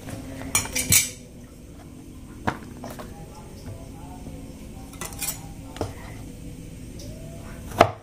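Scattered knocks and clinks of kitchen things being handled on a wooden cutting board, with a quick cluster about a second in. Near the end comes the loudest knock, a cleaver blade striking the board as it starts cutting a block of tempeh.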